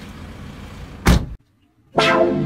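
A van's front door slamming shut once, about a second in, over low steady street background noise.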